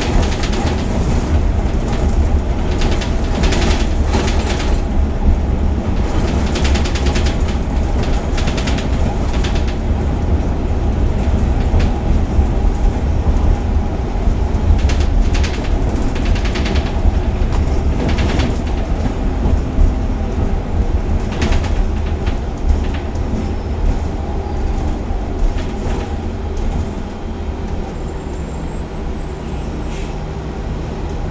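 Cabin of a Gillig Advantage low-floor transit bus under way: a steady low rumble of engine and road, with bursts of rattling and clatter from the body. It eases off near the end as the bus slows to a stop.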